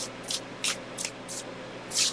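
Tarot cards being shuffled by hand: a run of short papery swishes, about three a second.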